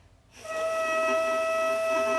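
Bassoon reed blown on its own (a crow), starting about half a second in and holding one steady pitch instead of the crunchy mix of pitches: a crow that is too low from lack of air or embouchure support.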